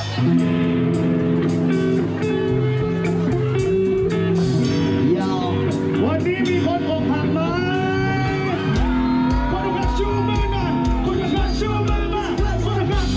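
Live band playing through a PA system: held guitar and keyboard chords start suddenly, a voice sings in gliding lines over them, and bass and drums come in with a steady beat about nine seconds in.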